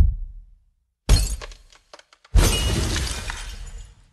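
Glass bottles smashing on a hard floor, twice: a crash about a second in with small pieces tinkling after it, then a bigger crash just after two seconds whose fragments trail off. A low thud sounds at the very start.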